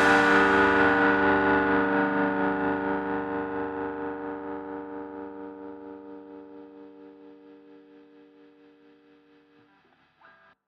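Soundtrack rock music ending on a held distorted electric guitar chord that rings out and fades away over about nine seconds.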